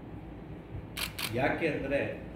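Two quick camera shutter clicks about a second in, a fraction of a second apart, followed by a man speaking.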